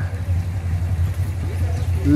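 A steady low rumble of background noise with no speech over it.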